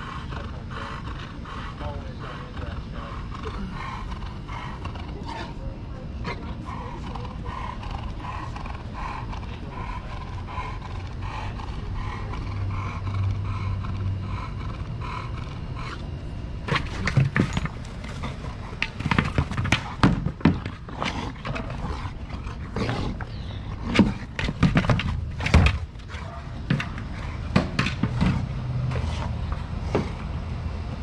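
American bulldog breathing heavily and making throaty noises as it plays with a rubber football toy. From about halfway through, irregular sharp knocks and thumps come in as the toy is nosed and pushed about.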